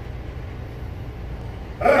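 A low steady rumble with little else, then near the end a young German Shepherd suddenly starts barking loudly, over a man's voice.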